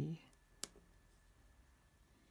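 A single sharp click from a pair of steel drawing dividers being stepped onto the paper, then quiet room tone.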